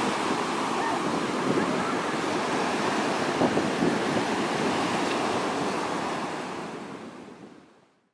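Ocean surf breaking on a beach, a steady rushing of waves that fades out over the last two seconds.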